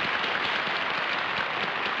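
Studio audience applauding steadily, a dense crackle of many hands clapping.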